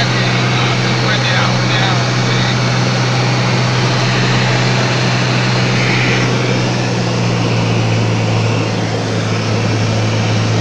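Cabin noise of a small single-engine propeller plane in flight: the engine and propeller run with a steady, loud drone and a deep hum.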